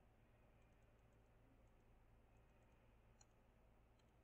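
Near silence, with a few faint computer mouse clicks as the simulation's on-screen buttons are pressed.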